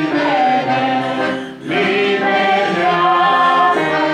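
Several voices singing a hymn together, a woman's and a man's voice among them, in long held notes. A short break between lines comes about a second and a half in.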